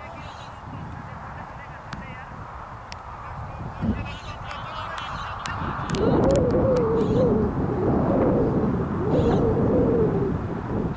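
Birds calling outdoors, with a louder, wavering call that starts about six seconds in and carries on.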